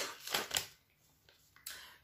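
Paper snack packet crinkling as it is handled: two short rustles just after the start and a longer one near the end.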